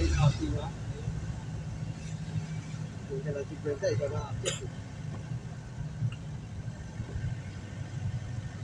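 Steady low drone of a van's engine and road noise heard from inside the cabin while driving, with a single sharp click about four and a half seconds in.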